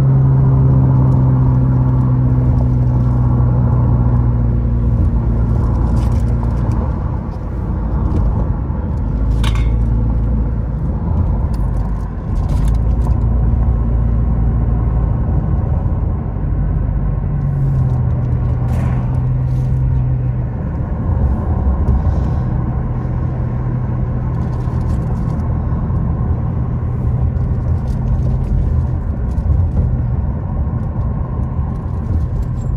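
Car engine and road noise heard from inside the cabin while driving: a steady low hum whose pitch drops and comes back a few times as the speed changes along the winding road.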